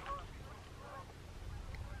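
Faint, distant bird calls, a couple of short calls in the first second, over a low rumble of wind on the microphone.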